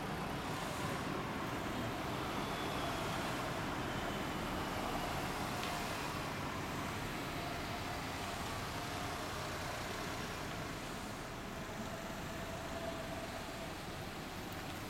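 Steady road-traffic noise of cars passing on a nearby street, with no engine running close by.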